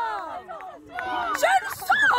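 Several men shouting and calling out on the pitch, their voices overlapping, as players react to a goal just scored.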